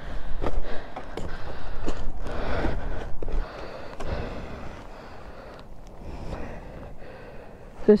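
Footsteps crunching and sinking through deep snow, with a person's heavy breathing. The tramping is louder for the first three seconds or so, then gives way to quieter handling and breathing.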